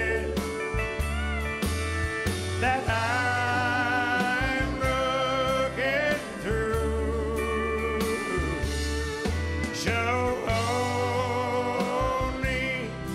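A country song performed live: a male lead singer holds long notes with vibrato over a band, and several voices sing harmony along with him.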